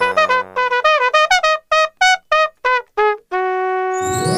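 Trumpet playing a quick string of about a dozen short notes, each bending in pitch, then holding one long note near the end.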